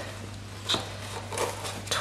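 Faint handling sounds of a thin ribbon being wrapped around a cardstock box: a few soft taps and rustles, about a second in and again shortly after, over a steady low hum.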